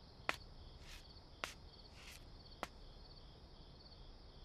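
Faint crickets chirping in a steady, pulsing trill, with three sharp taps a little over a second apart, footsteps on a hard floor.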